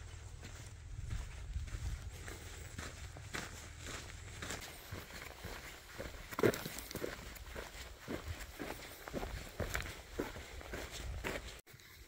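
Footsteps of a hiker walking at a steady pace on a dusty dirt trail, with a low rumble of wind or handling on the microphone early on.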